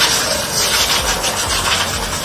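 Loud, quick rubbing strokes from hand work on a motorcycle's brake parts during a brake change.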